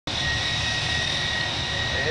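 Workshop machinery running steadily: a constant high-pitched whine over a loud rushing hum, starting abruptly as the recording begins.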